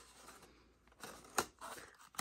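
Faint rustling of cardstock being handled and pressed around the edge of a small paper basket, with one sharp tap or click a little after the middle.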